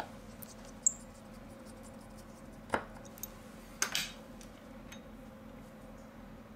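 A few sharp, light clicks of a precision screwdriver and small parts being handled during phone reassembly: one about a second in, another near the middle, and a close pair a little later, over a faint steady hum.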